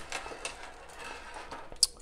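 Spring-coiled metal drain claw tools and plastic barbed drain strips being handled and shifted: light clicking and rattling, with one sharp click near the end.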